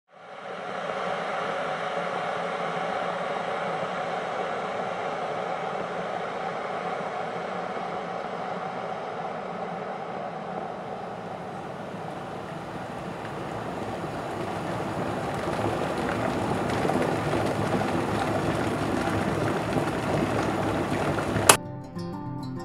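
Steady rushing ambient noise that fades in at the start, swells in the second half, and is cut off by a sudden sharp hit just before the end.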